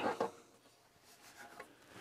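Faint rubbing and a light click as a metal instrument case cover is slid and lifted off its chassis.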